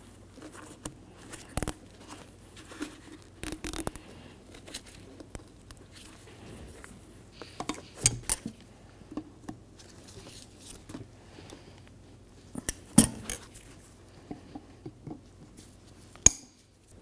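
Scattered light clicks and taps of hands working parts on a padded workbench while a plastic wire tie is fitted around a shock absorber's protective dust boot, the sharpest click about three-quarters of the way through.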